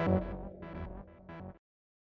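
Synthesizer bass preset in Arturia Analog Lab, played from the keyboard: a deep bass note struck at the start, then quieter notes that fade away. The sound cuts off to silence about a second and a half in.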